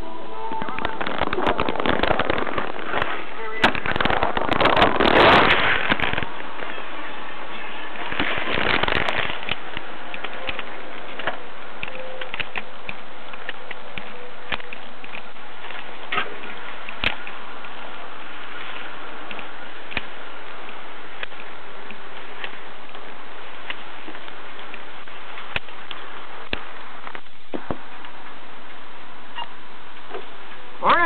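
Steady hiss on a police dashcam's audio, with loud crackling static for the first few seconds and again briefly soon after, then scattered single clicks.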